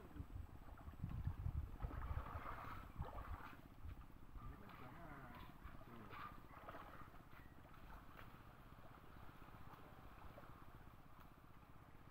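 Quiet outdoor ambience with faint, distant voices and irregular low rumbling during the first few seconds.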